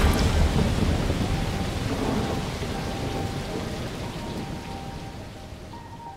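Film sound effects of steady rain with a low rumble of thunder, fading out gradually, with faint held music tones underneath.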